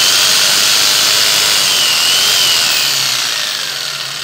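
DeWalt corded jigsaw running free with no workpiece, its motor and reciprocating blade going steadily with a faint wavering whine, a little quieter near the end. It runs without cutting out on fresh carbon brushes, fitted because the worn ones no longer touched the armature.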